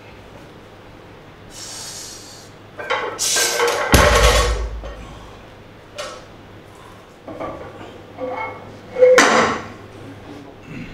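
Barbell loaded with bumper plates during a deadlift: the plates rattle and clank, then land on the floor with a heavy thud about four seconds in. Several shorter metallic clanks and clinks follow.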